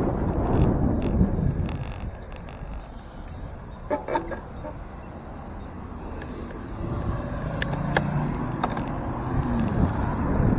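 Wind buffeting the microphone of a bicycle's handlebar-mounted camera as the bike rides, easing off in the middle of the stretch and building again toward the end. A short clatter about four seconds in, and a car's engine hum alongside near the end.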